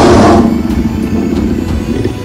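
Tiger roar sound effect: loud and harsh at the start, then trailing off into a lower, rough growl over the next second or so, over background music.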